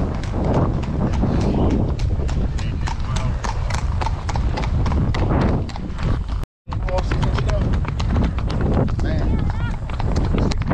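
Horses' hooves clip-clopping on a paved road at a walk: a quick run of sharp strikes from several horses over a low rumble. The sound cuts out for a moment about six and a half seconds in.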